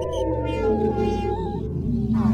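Synthesizer music: sustained electronic tones sliding downward in pitch, over a low pulsing bass.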